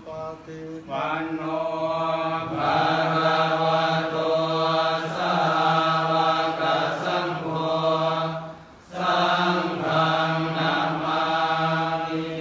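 A group of Thai Buddhist monks chanting together in Pali on one steady, held pitch, with a short pause about nine seconds in.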